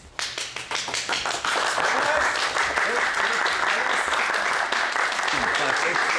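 Studio audience applauding: separate claps at first, filling out into steady applause about a second and a half in.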